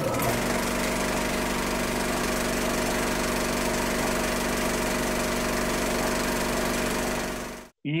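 Steady mechanical running sound, like a motor with a clatter, laid over the show's animated transition bumper; it fades out just before the end.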